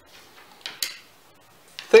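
Game chips clicking on a board as a piece is picked up and set down: two short clicks close together a little under a second in, with fainter ticks around them.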